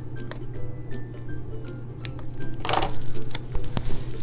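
Soft background music, with small scissors cutting a paper sticker: a few light clicks and one louder snip a little before three seconds in.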